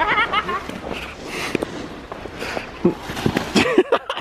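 Wooden sledges sliding downhill on snow, their runners hissing over it in swells, with a high-pitched shriek of a voice at the start and short shouts and a few knocks near the end as a rider tumbles off into the snow.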